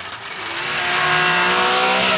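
BMW E36 drift car's engine held at high revs while it slides, rising slightly in pitch, over a hiss of tyres and spray on the wet track. It swells over the first second and then stays loud.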